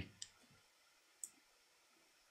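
Near silence, broken by two faint, short clicks of a computer mouse, one about a quarter second in and one just after a second.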